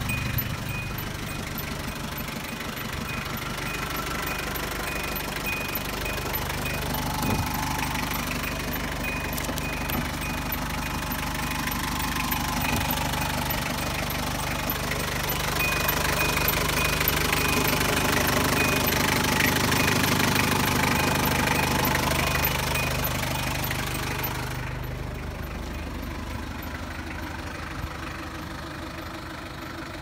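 Hyundai Grace van's four-cylinder diesel engine idling steadily, louder about halfway through. A faint repeating high beep runs alongside and stops about six seconds before the end.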